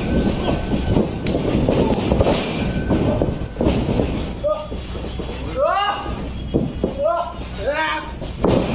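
Wrestlers' bodies landing on the ring mat, with thuds and slams and one sharp impact about a second in. Shouting voices with rising calls come in the second half.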